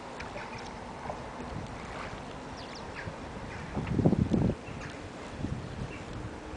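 Outdoor ambience from a canoe drifting on a calm river: a faint steady background with a few soft, high chirps, and a brief louder burst of low noise about four seconds in.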